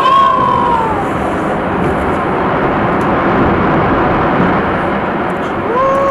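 Onlookers' drawn-out, falling 'ooh' exclamations over a steady rushing noise: one in the first second and another just before the end.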